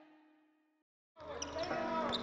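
Background music ends on a held note that fades out, followed by about a second of silence. Then the sound of a basketball practice in a gym fades in, with basketballs bouncing on the hardwood.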